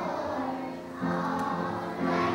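A group of young children singing together, with a new sung phrase starting about a second in.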